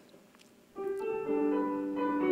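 Recorded piano music playing a few held notes, starting just under a second in after a moment of near silence.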